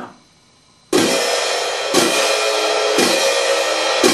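A pair of hand-held orchestral crash cymbals struck together at a piano (soft) dynamic: after about a second of quiet, three crashes about a second apart and a fourth at the very end, each ringing on into the next.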